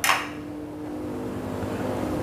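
A brief clink right at the start, then a steady low hum with a faint hiss from the stove area while a saucepan of boiled potatoes is lifted off the gas burner.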